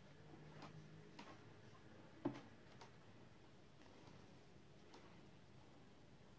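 Near silence with a few faint clicks as metal circular knitting needles and the knitted work are handled, and one sharper tap a little over two seconds in.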